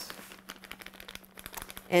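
Plastic bag of toffee bits crinkling as it is handled and tipped, a quick run of small irregular clicks and rustles.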